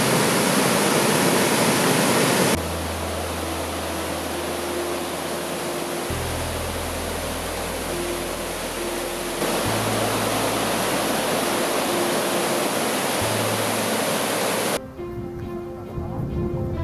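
Loud rushing water of a swollen mountain river churning through rapids, with background music playing underneath. The water noise drops a little a couple of seconds in, grows louder again past the middle, and cuts off shortly before the end.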